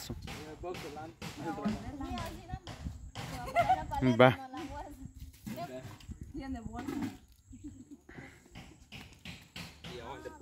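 People talking in low, conversational voices, with a louder remark about four seconds in.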